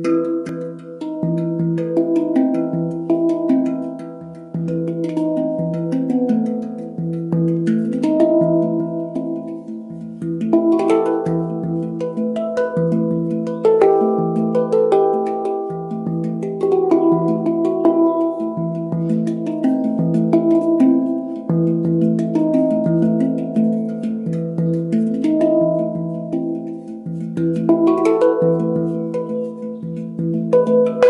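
Handpan tuned to the Romanian Hijaz scale, played with the hands: a rhythmic improvisation of struck, ringing steel notes over deep notes that recur in a repeating pattern, with quick light taps between them.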